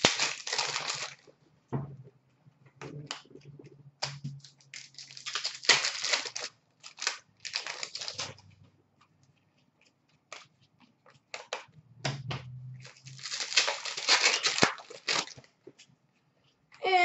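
Hockey card pack wrappers being torn open and crinkled in several separate bursts of rustling, with small clicks and handling noises between them.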